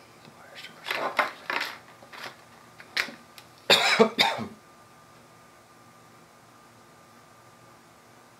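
A man coughing and clearing his throat in a few short bursts over the first half, the loudest about four seconds in. After that only a faint steady background is left.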